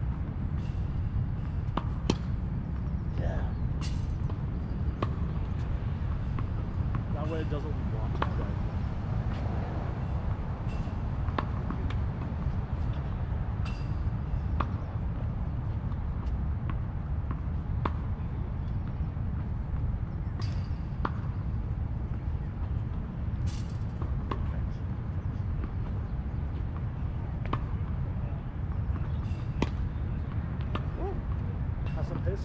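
Tennis balls struck by racquets and bouncing on a hard court: sharp, short pops at irregular intervals of a few seconds, over a steady low rumble.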